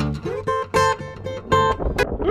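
Background music: an acoustic guitar playing a quick run of plucked notes.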